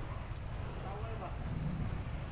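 Street ambience: a steady low rumble of traffic with indistinct voices of passers-by.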